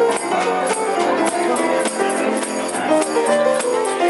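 Upright piano being played, a quick run of melody notes over chords.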